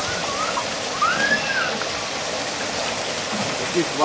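Steady rush of water in a splash pool, with high children's voices calling over it.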